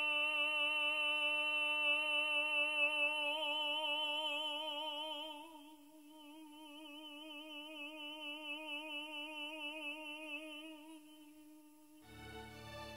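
An operatic tenor holds one very long, soft sung note on a single breath, part of a note sustained for about half a minute. The pitch stays steady: it is straight at first, then takes on a gentle vibrato. About halfway through it drops to a quieter level, and it fades out near the end.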